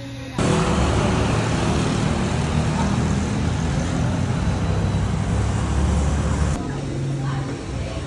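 Loud, steady city-street traffic noise with a low rumble. It starts suddenly about half a second in and cuts off abruptly a little before the end.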